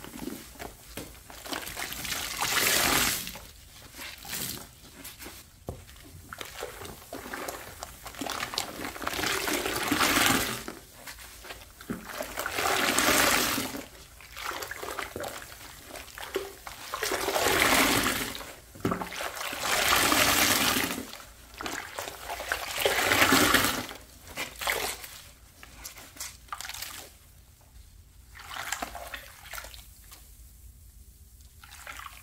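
A large soapy sponge is squeezed and released in a basin of sudsy water. Water gushes and sloshes out of it in loud swells every few seconds, and the swells ease off near the end.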